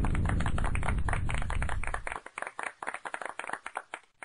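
Applause, dense at first and then thinning out to scattered single claps near the end.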